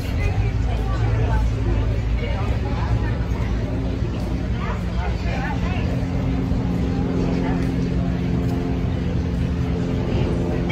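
Steady low engine hum with indistinct voices over it.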